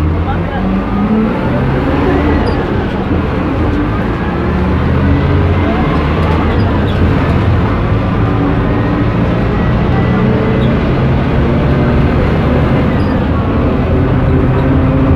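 City bus engine running under way, heard from inside the crowded cabin. Its low drone shifts in pitch, with a thin whine that rises and falls a couple of times.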